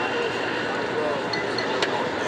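City street background noise with faint, indistinct voices, and a single sharp click near the end.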